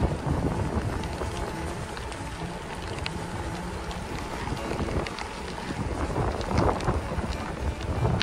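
Wind buffeting a bicycle handlebar-mounted phone's microphone while riding, an uneven low rumble with scattered short ticks.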